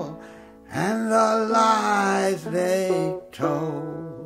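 Banjo playing under a man's singing voice holding long notes of a folk sea song.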